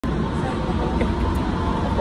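Steady low rumble of a train carriage's running noise, heard from inside the car.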